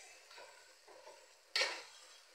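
Metal spoon stirring and mashing boiled potatoes into spiced oil in an aluminium pan, scraping softly over a faint sizzle. About one and a half seconds in, the spoon strikes the pan with one sharp clank.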